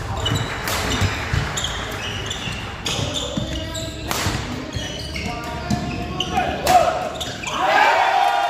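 Badminton rally in a large hall: sharp racket strikes on the shuttlecock every second or two, the loudest a jump smash about four seconds in. Voices carry through the hall and rise into loud calls or shouts near the end as the rally finishes.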